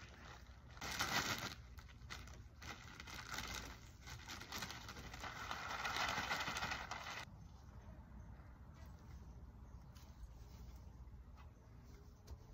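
Potting soil poured from a plastic bag onto a mounded garden bed. A short rustle of the bag comes about a second in, then a steady hiss of pouring soil that cuts off about seven seconds in, followed by faint scattered scrapes.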